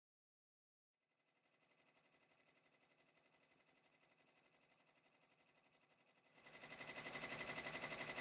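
Silent for about the first second, then a Baby Lock Array six-needle embroidery machine stitching with a rapid, even rhythm. It is faint at first and much louder from about six seconds in.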